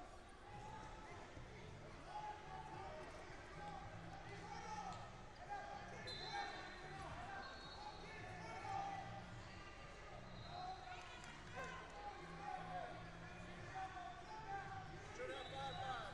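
Voices calling out and echoing across a large sports hall, with occasional dull thuds. Short high squeaks come in about six seconds in and again near the end.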